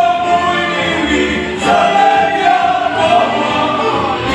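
Live Moravian folk band playing: fiddles and double bass with keyboard, and several voices singing together over them.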